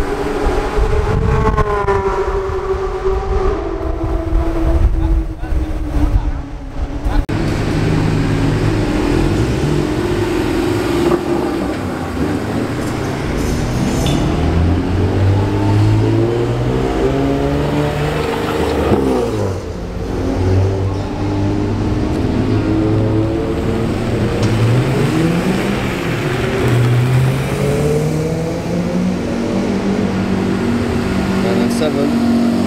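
Porsche 981 Cayman GT4's flat-six, fitted with race headers and the stock muffler, pulling away at low speed, its engine note falling and fading over the first several seconds. After that, other sports cars' engines run at low revs as they roll by, their notes rising and falling gently and overlapping.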